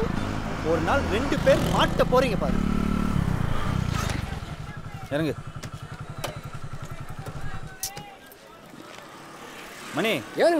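Motorcycle engine running, then idling with an even low pulse, and switched off about eight seconds in. Voices are heard over the first couple of seconds.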